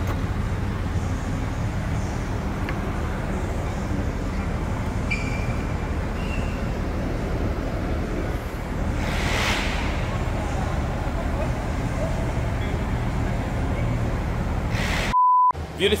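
Steady low mechanical hum of workshop background noise, with a short burst of hiss about nine seconds in. Near the end the sound cuts to a brief electronic beep, and then a man starts speaking.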